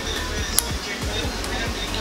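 Background music, with one sharp click about half a second in: the GAN cube's GES adjustment key clicking to its next setting as it is turned counterclockwise in the centre cap.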